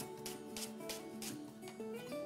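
Chef's knife slicing a leek into rings on a wooden cutting board, a steady run of quick cuts about four a second, under background music.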